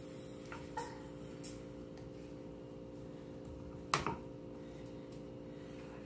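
Quiet kitchen with a steady low hum; a few faint taps and one sharper knock about four seconds in, from a wooden spoon and scraper against a glass baking dish as thick brownie batter is poured and spread.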